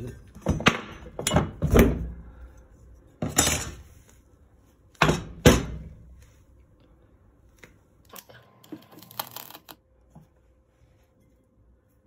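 Metal fog machine parts being handled and set down on a plywood workbench: a series of sharp clunks and knocks in the first six seconds, then a few lighter clicks and rattles.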